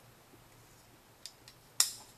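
Titanium frame lock folding knife being handled and closed: two faint clicks, then one sharp metallic snap near the end.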